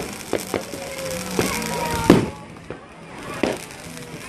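Fireworks going off: a handful of sharp bangs at uneven intervals, the loudest about two seconds in.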